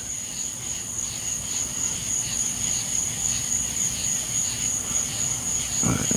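Night insects calling: a steady high-pitched drone with a second, lower call pulsing about twice a second.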